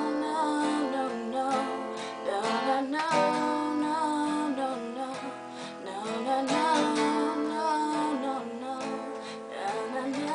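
A woman singing over a strummed acoustic guitar.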